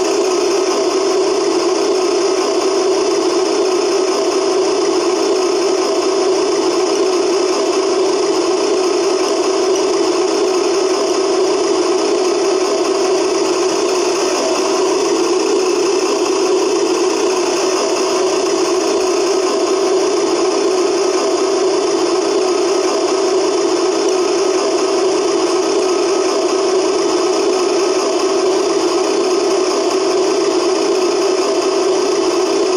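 Steady, unchanging engine-like idling drone from the homemade RC tractor, running on without change while the grapple arm lifts.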